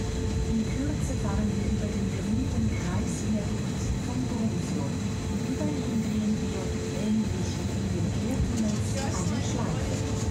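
Bernina Express train running, heard from inside the carriage: a steady rumble with a constant hum, and people's voices talking over it.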